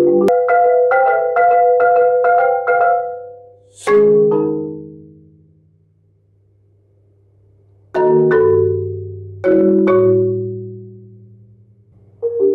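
Solo four-mallet playing on a Marimba One concert marimba. A quick run of repeated notes leads to a loud struck chord about four seconds in, which rings out and dies away. Two more loud chords follow, about eight and nine and a half seconds in, each left to ring and fade.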